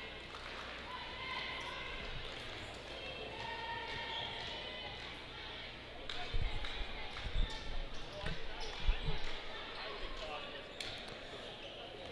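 A basketball bounced on a hardwood gym floor about half a dozen times over three seconds, a little past the middle: a shooter's dribbles before a free throw, heard over the murmur of a gym crowd.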